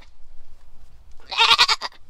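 A young buck goat bleating once, a short, wavering call about a second and a half in.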